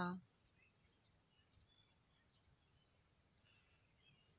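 Near silence, with a few faint, short bird chirps scattered through it.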